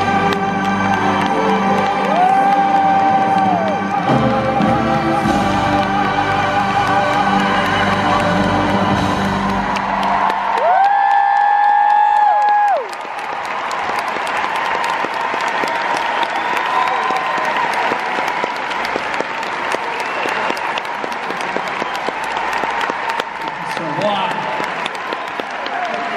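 Full orchestra with a male singer holding a long final note, ending suddenly about 13 seconds in; a large arena crowd then applauds and cheers.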